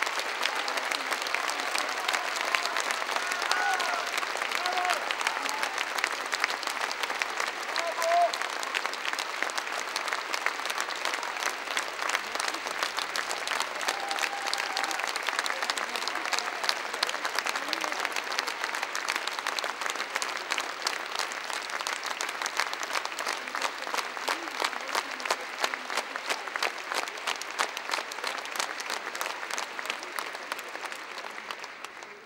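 Theatre audience applauding steadily, dense clapping, with a few shouting voices from the audience in the first several seconds. The applause begins to thin just at the end.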